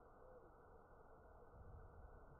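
Near silence: faint steady background noise, with one brief faint falling tone just after the start.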